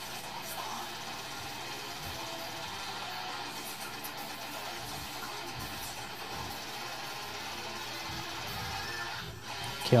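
Technical death metal electric guitar cover playing back from a video at a steady level: fast, dense guitar riffing over the band's track.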